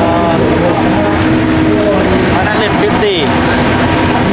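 Loud, steady din of motorcycle engines running, with voices talking over it.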